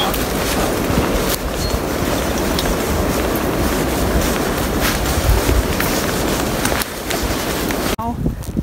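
Wind buffeting the microphone: a loud, steady rushing with a rumbling low end and a few light clicks of handling or footsteps, dipping briefly near the end.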